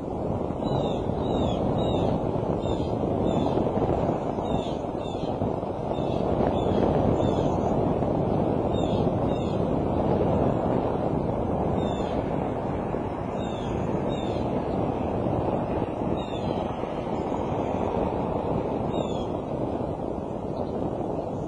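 Wind buffeting an outdoor webcam microphone, a steady rushing that swells and eases, with faint short high chirps about once a second.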